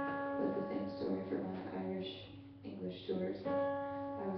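A woman singing live to her own acoustic guitar, strumming along; she holds a long sung note at the start and another near the end.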